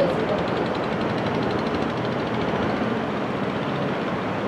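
Steady rushing background noise with faint voices calling out across the field, one briefly louder right at the start.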